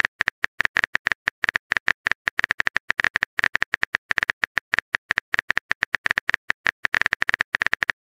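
Smartphone keyboard typing sound: a rapid, irregular stream of short clicks, about eight a second, one per key as a text message is typed out.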